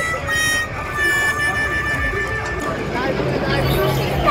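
Fairground ride noise with riders' voices. A steady, held high tone with overtones sounds through the first half, and excited voices come in near the end.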